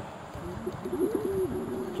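Racer pigeons cooing: several low coos that rise and fall in pitch, overlapping around a second in.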